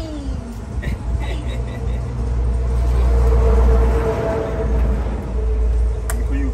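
A motor vehicle driving past close by: a low engine rumble with a steady hum that swells to its loudest a little past the middle, then eases off.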